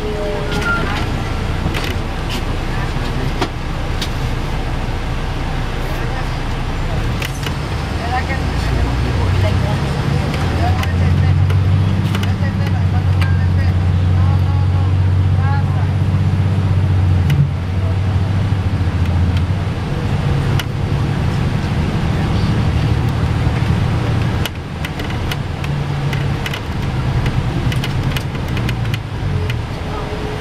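Cabin sound of a 2002 MCI D4000 coach bus underway: a steady diesel engine drone with road noise. The engine note grows stronger about a third of the way in and eases a little after the middle.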